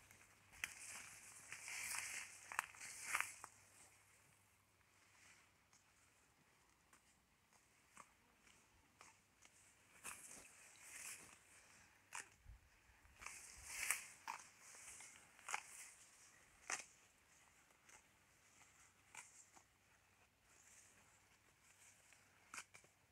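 Faint crisp tearing and crunching of a cow grazing tall Mombaça grass close by, ripping off the leaf tips and chewing, in clusters of bites separated by quiet gaps.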